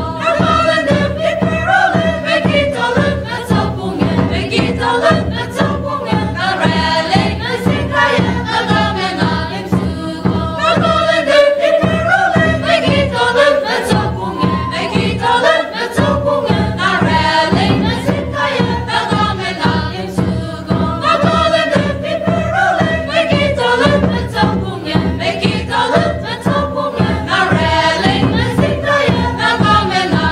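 Choir of men's and women's voices singing together into microphones, a continuous sung melody.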